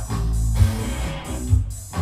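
Live band playing loudly, driven by guitar and bass, with a heavy hit across the whole range roughly once a second.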